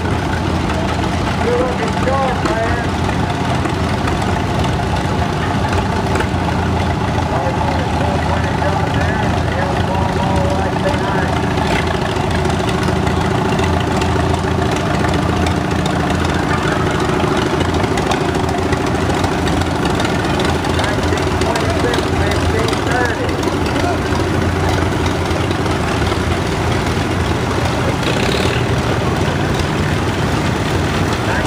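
Vintage farm tractor engines running at a slow, steady idle as several tractors drive past, with a low, even hum that holds through the whole stretch.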